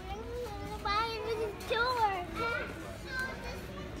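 A young child's high-pitched voice, talking or vocalizing without clear words for about three seconds, then trailing off near the end.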